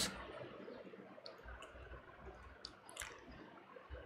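A few faint, sparse clicks and taps of a stylus on a tablet screen while notes are handwritten, over quiet room tone.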